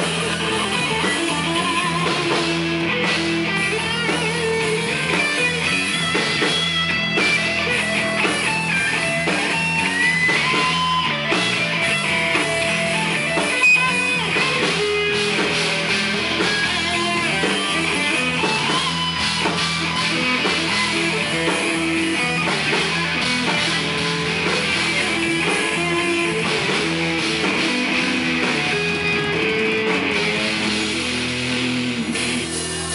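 Heavy metal band playing live: electric guitar over bass guitar and drums, loud and steady throughout.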